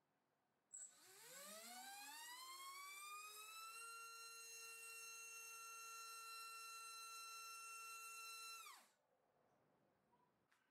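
Small brushless drone motor (MAD Racer 2306-2400KV) on a thrust stand, driving a three-blade 5050 propeller on 4S power. It starts with a click about a second in, and its whine rises over about three seconds to full throttle. It then holds a steady pitch at roughly 27,000 RPM and 39 A, and winds down quickly to a stop near the end.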